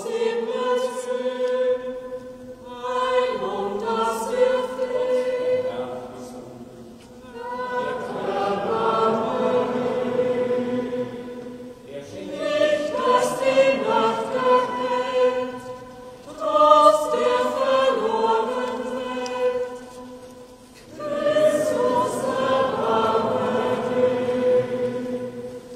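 A choir singing a slow sacred song in phrases about four seconds long, each followed by a brief pause, with the voices echoing in a large stone church.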